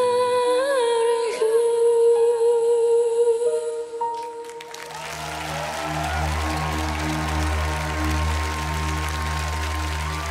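A woman's singing voice holding one long note into a microphone, with a slight waver in pitch, ending about four and a half seconds in as the song finishes. Then an audience applauds over a low, steady backing-music chord.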